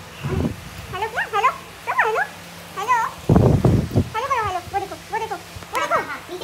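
Small animals' repeated short high cries, each rising then falling in pitch, two or three a second and sometimes overlapping. Two loud low bumps break in, the louder about three seconds in.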